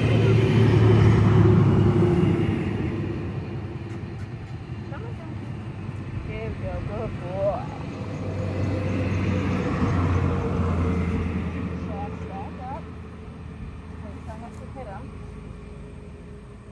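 Motor vehicles passing on a road, their engine and tyre noise swelling to a peak about a second in and again around ten seconds, then fading.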